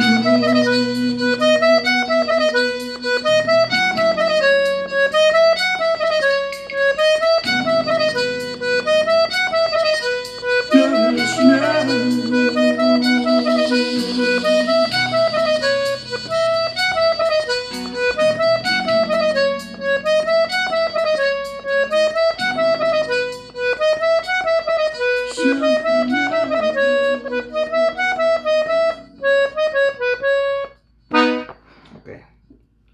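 Gabbanelli diatonic button accordion tuned in E, played in B major: a short melodic figure on the treble buttons repeats about once a second, with bass notes coming in and dropping out every few seconds.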